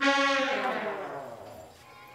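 A background-score sting: one sustained musical note that comes in suddenly and fades out over about two seconds.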